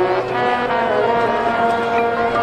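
Marching band brass section playing loud, sustained chords, with the harmony shifting to new held notes about a second in.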